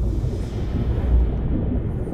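Low, muffled rumbling water noise as picked up by an underwater camera's microphone, with no distinct events; it grows duller toward the end.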